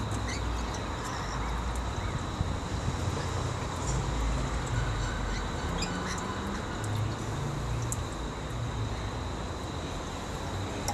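Steady low outdoor rumble with a thin high whine running under it, and a few faint bird calls.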